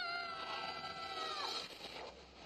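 A boy's long, high scream from an animated film's soundtrack as he falls, held about a second and a half and falling slightly in pitch before it cuts off.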